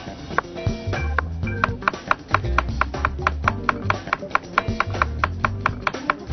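Chef's knife slicing a cucumber thinly on a cutting board, a quick even run of strokes from about a second and a half in, under background music with a steady bass line.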